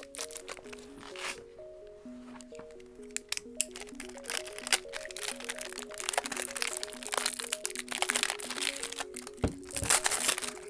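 Background music playing a simple melody of steady notes, with plastic packaging crinkling and crackling, busier and louder in the second half, as a small plastic bag is cut open with a pocket knife.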